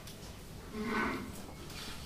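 Sparse free-improvised playing on cello, double bass, trumpet and tenor saxophone, with one short, louder note about a second in.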